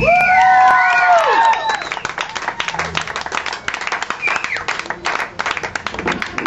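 Audience clapping and whooping after a metal song, starting with a long drawn-out cheer that falls away, then scattered clapping with a short whoop about four seconds in.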